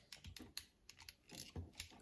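Faint, irregular clicks and snaps of small plastic parts as a Transformers toy's hinged limbs and joints are worked by hand, several clicks in two seconds.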